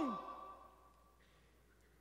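A man's voice trailing off at the end of a spoken word, its pitch falling and fading over about a second, followed by near silence.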